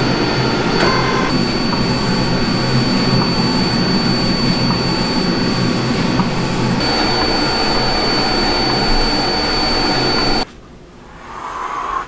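Epson Stylus Pro 4900 large-format inkjet printer running a print: a steady mechanical whirring with a thin high whine, cutting off suddenly about ten seconds in.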